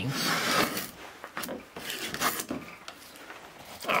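Veritas combination plane's blade cutting a shaving along a board's edge: one loud rasping stroke in the first second, then a few shorter, fainter scrapes of the plane on the wood.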